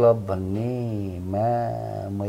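A man's voice holding one long, steady low note, like a chant, with the vowel changing about halfway through.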